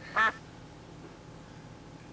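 One brief nasal vocal sound, a short pitched 'hm'-like note lasting about a fifth of a second just after the start, then quiet room tone.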